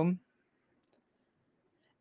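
Near silence after a voice stops, broken by one faint, short click a little under a second in.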